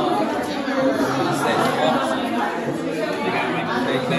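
Indistinct chatter: several people talking over one another in a room, no single voice clear.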